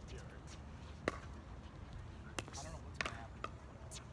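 A few sharp pops of a plastic pickleball on a hard court: one loud pop about a second in, then three fainter ones in the second half.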